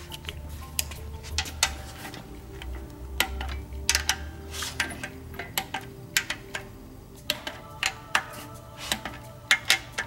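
Sharp, irregular metallic clicks of a socket wrench and torque wrench on the rocker-arm valve adjuster nuts of a Suzuki Samurai 1.3L overhead-cam cylinder head, as the nuts are torqued to 13 foot-pounds. Quiet background music runs underneath.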